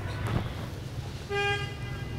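A vehicle horn gives one short, steady beep about a second and a half in, over a steady low background hum.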